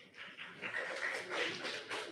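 Audience applauding in a hall: a dense patter of many hands clapping that starts suddenly.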